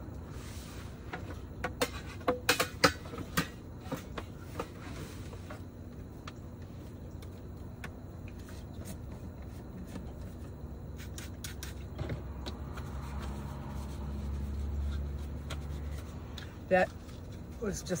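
Dishes being cleaned by hand: a plastic plate and a metal tumbler handled with a cluster of clatters and knocks a couple of seconds in, then a few clicks from a trigger spray bottle and a paper towel wiping. A low rumble swells and fades in the second half.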